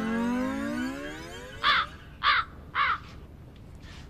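Comic sound effect: a long tone that slowly falls in pitch and fades out, then three crow caws about half a second apart.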